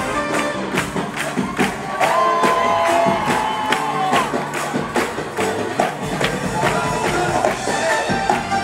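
Live Arabic pop band playing, with percussion beating steadily at about three hits a second and a held melodic line in the middle. The concert crowd is heard under the music.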